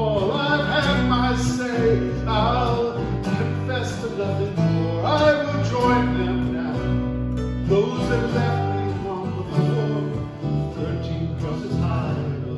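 Live acoustic band music: two acoustic guitars and an electric bass playing a slow folk-country song, with held bass notes under picked and strummed guitar chords.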